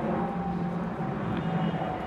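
Qantas jet airliner flying over soon after takeoff: a steady engine rumble.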